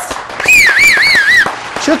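A loud, high whistle that starts on a higher note and then warbles up and down about three times over roughly a second.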